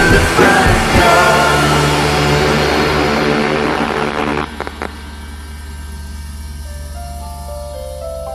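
Live rock band playing loudly, the full band cutting off suddenly about four and a half seconds in after a couple of last stabs. A low sustained drone and soft tinkling keyboard notes carry on after the cut.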